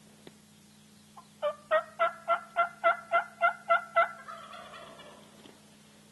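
A series of about ten loud turkey yelps, about four a second, trailing off into a quieter rattle.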